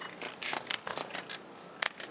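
Speed-skate blades scraping and clicking on the ice as the skaters shuffle into place at the start line: a few short, sharp scrapes over a faint arena hiss, the sharpest near the end.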